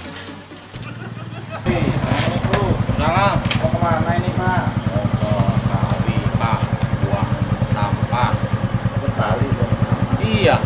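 Motorcycle engine idling steadily, cutting in abruptly about two seconds in.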